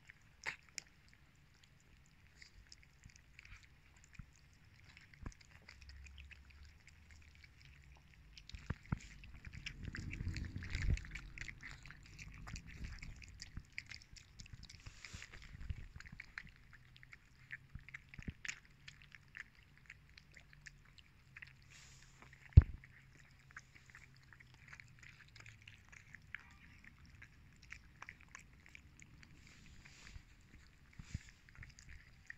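Several cats eating wet cat food chunks in gravy from paper plates: a constant patter of small wet chewing and lapping clicks. A single sharp knock about two-thirds of the way in.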